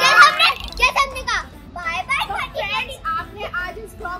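Excited voices of a woman and children: loud shouting and laughter at the start, then talking.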